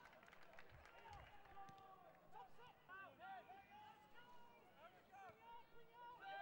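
Near silence, with faint voices calling out on and around a football pitch, heard at a low level from the ground.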